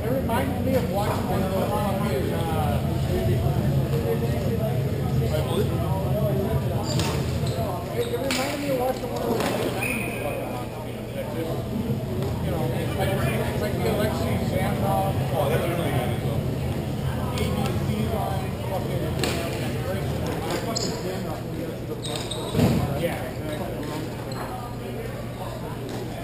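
Hockey rink ambience in a large echoing hall: distant players' voices, a steady low hum, and scattered knocks of sticks and puck on the rink floor, with one louder thump near the end.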